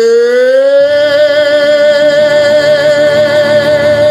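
A male soul singer holding one long, loud high note that slides up during the first second and then holds with vibrato, over acoustic guitar chords that come in about a second in.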